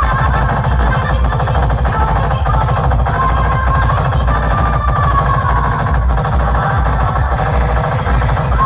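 Loud electronic dance music with a fast, heavy bass beat and a high melody line, played through towering stacks of speaker boxes.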